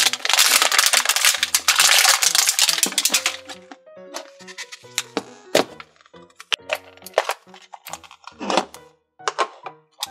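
Foil-and-plastic wrapper of a Num Noms mystery makeup pack crinkling loudly as it is pulled off, for about the first three seconds. After that, background music with a few clicks of the clear plastic case being handled.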